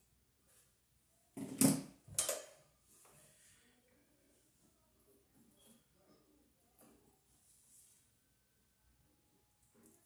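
Pliers scraping the old cloth insulation off a wire in an outlet box: two louder rasps about one and a half and two seconds in, then faint scratches and small clicks.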